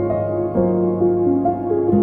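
Slow piano improvisation played on a Korg OASYS keyboard workstation: held chords over a sustained low bass note, with a new note or chord coming in about every half second.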